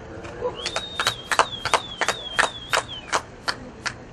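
A spectator clapping steadily, about three claps a second, with a long high whistle over the first part.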